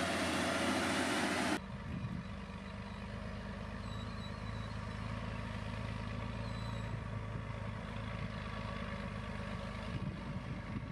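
For the first second and a half, a LiuGong motor grader's diesel engine runs under load, loud and dense, as its blade works gravel. It cuts off suddenly and gives way to the quieter, steady diesel hum of a water tanker truck crawling along the gravel road, with a hiss from its water spray.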